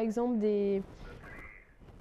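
A woman's voice finishing a sentence on a long, drawn-out syllable held at one pitch, then a short pause with only a faint sound.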